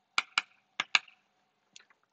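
Chalk tapping against a blackboard as a formula is written: four short, sharp taps in two quick pairs.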